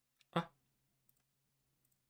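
A single short click about a third of a second in, over a faint steady low hum.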